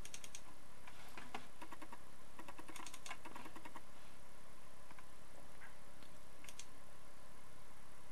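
Scattered clicks from a Chromebook laptop's controls, in a few small clusters, over a steady background hiss.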